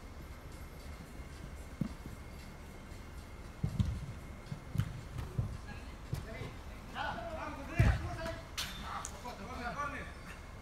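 Dull low thuds from play on artificial turf, mostly footfalls and ball contact, spread through the middle of the stretch and loudest about eight seconds in. Players shout to each other in the last few seconds, over a low steady hum from the hall.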